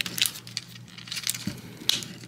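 Plastic parts of a Transformers Legacy United Sandstorm figure being handled and pressed together: light rubbing and small clicks, with a sharper click near the end as the engine block's two tabs seat into place.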